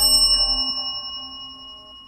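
Bell-like notification chime sound effect: a single ding that rings on and slowly fades.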